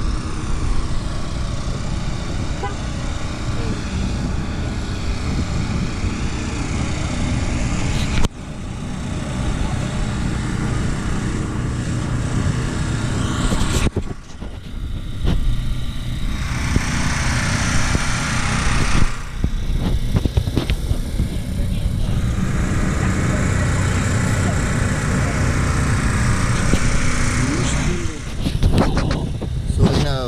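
Outdoor noise dominated by a heavy, uneven low rumble of wind on a body-worn action camera's microphone. A brighter hiss swells twice in the second half, each time for a few seconds.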